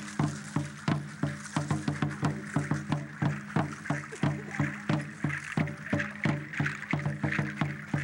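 A drum beaten in a steady, even rhythm, about three beats a second, each beat ringing low, with a steady high hiss above it.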